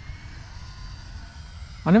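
Faint, high whine of an E-flite Cirrus SR22T RC plane's electric motor and propeller flying at a distance, its pitch drifting slightly, over a low steady rumble. A man's voice starts near the end.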